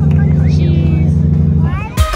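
A loud, steady low drone with voices over it, dying away shortly before the end.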